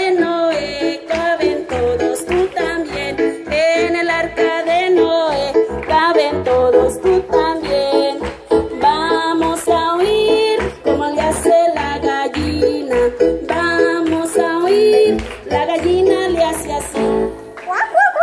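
A woman singing into a microphone, accompanied by an electronic keyboard playing a steady beat.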